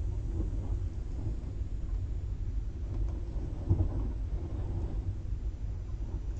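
Steady low background rumble, with one soft thump a little past the middle.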